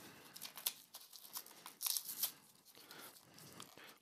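Faint, intermittent scratching and tearing of packing tape and cardboard as a heavily taped box is picked at by hand.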